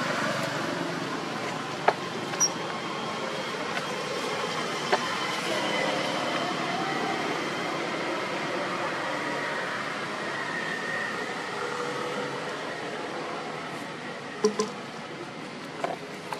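Steady outdoor background noise with a few brief sharp clicks.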